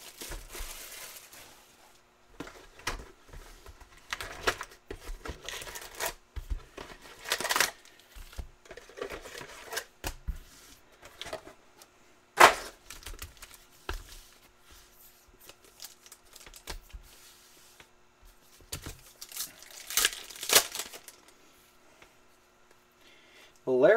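Plastic shrink-wrap and foil trading-card packs crinkling and tearing as card boxes are unwrapped and their packs handled, in irregular bursts with a sharp snap about twelve seconds in.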